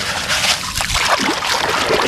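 Shallow muddy water splashing and sloshing steadily as a hand stirs it, rinsing wet sand out of a toy dump truck's bed.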